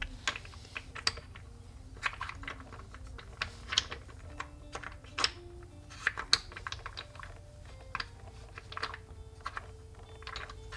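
Small wooden puzzle blocks clicking and knocking against each other and the wooden tray as they are lifted, slid and set back in place. The clicks are irregular, several a second at times, under faint background music.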